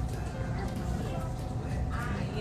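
Faint, indistinct voices over steady low room noise.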